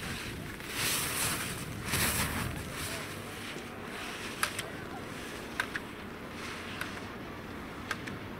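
Slalom skis hissing as their edges carve across hard snow, in two louder swells early in the run, then four sharp taps about a second apart as the racer's poles and body knock slalom gates aside, over steady wind noise on the microphone.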